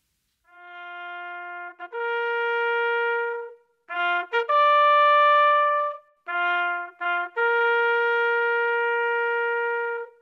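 Valveless bugle playing a slow call on its natural notes of the harmonic series: a low note and a quick repeat lead to a long held note a fourth higher, then a quick rising figure to a higher held note, then the low pair again and a long held middle note. The opening note is softer than the rest.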